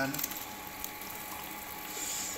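Water in an aluminium pot on the stove heating to the boil, giving a steady hiss with faint ticks.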